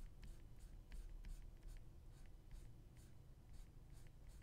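Faint scratching of a stylus nib on a graphics tablet, a quick run of short fur strokes made with full pen pressure, about three or four a second.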